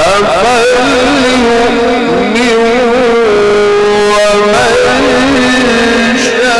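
A male reciter chanting the Quran in the melodic mujawwad style into a microphone: one voice drawing out long notes with wavering melismatic ornaments, and holding a steady note for about a second near the middle.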